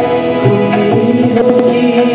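Live Indian classical-style music: a harmonium holding steady notes and a tabla playing strokes, accompanying a male singer on a microphone.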